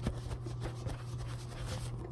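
A cloth wiping the camera lens clean, a continuous scratchy rubbing right against the microphone, over a low steady hum.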